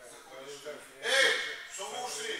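Indistinct voices talking, with one louder exclamation about a second in.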